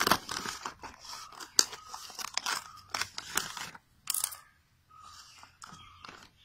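Scissors cutting open the plastic film sealing a clear plastic food tray, with the plastic crackling and crinkling as it is pulled open and handled. It is a run of short sharp snips and crackles, loudest near the start, with a brief lull about four seconds in.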